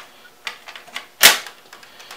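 A few light clicks, then a single sharp knock a little past halfway: the CPU cooler's backplate being fed through and set against the back of the motherboard.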